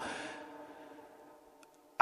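The tail of a man's speaking voice dies away in the reverberation of a church during a pause in the homily, fading to near silence, with a faint tick about one and a half seconds in.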